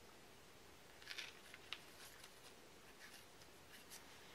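Faint small clicks and rustles of hands handling straight pins and a paper strip on a thread-wrapped temari ball: a cluster about a second in and a few more scattered later, over near silence.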